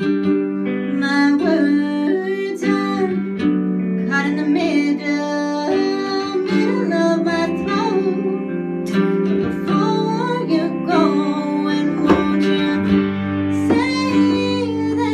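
A woman singing a song over a strummed baritone ukulele and an electric guitar.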